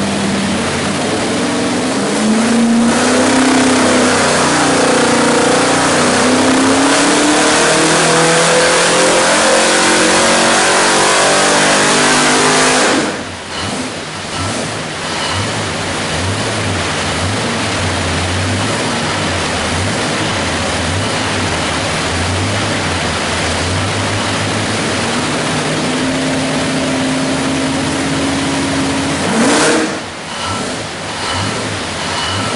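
347 cubic-inch stroker small-block Ford V8 running on an engine dyno. A few seconds in it winds up under load in one long, steady rise in pitch lasting about ten seconds, then the throttle snaps shut and the revs drop suddenly. It then runs at low speed with the revs wavering, and holds a steadier, higher speed near the end.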